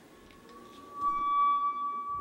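A single sustained high-pitched ringing tone with overtones, swelling loud about a second in and then fading.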